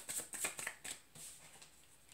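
Tarot cards being shuffled by hand: a quick run of crisp papery flicks, about six or seven a second, that trails off about a second in.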